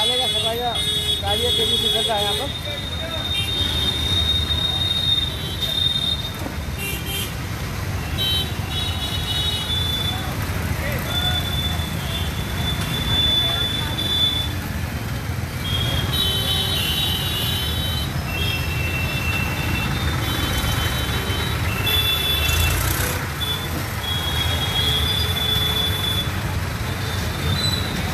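Busy street traffic noise with high-pitched vehicle horns beeping on and off, each beep held for a second or two, many times over.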